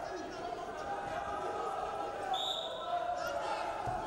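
A referee's whistle blown once, briefly, about two seconds in, restarting the wrestling bout, over the voices of coaches and crowd in a large hall. A low thump comes near the end as the wrestlers lock up.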